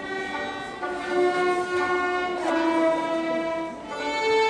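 A violin group playing long held notes together in chords; the chord changes about a second in and again about halfway through.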